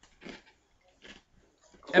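A pause in a conversation, with a few faint short sounds, then a man's voice starting near the end.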